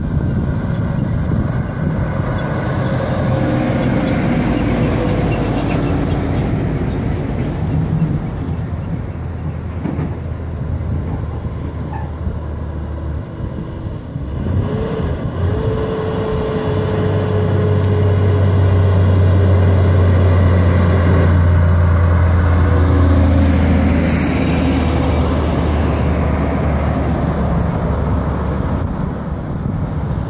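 Diesel engines of heavy-haulage prime movers running as an oversize convoy drives past, with tyre and road noise. The low engine drone grows to its loudest about two-thirds of the way through as a truck passes close, its note falling slightly, then eases off.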